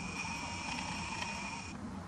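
Nikon Coolpix P900's lens zoom motor whining steadily as the lens zooms in, with a couple of faint ticks, stopping just before the end.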